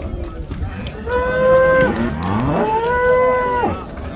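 Cattle mooing: two long calls of about a second each, the second one sliding up in pitch as it begins.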